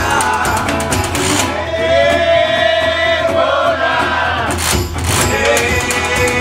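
A live blues duo: scraped washboard rhythm and resonator guitar under two men singing. About one and a half seconds in, the instruments drop out and one voice holds a long, wavering note. The band comes back in with a sharp stroke near the end.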